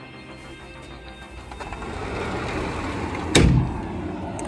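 A glass sliding door being slid open, letting in a rising wash of outdoor air noise, with one sharp knock near the end as the door meets its stop. Faint background music runs underneath.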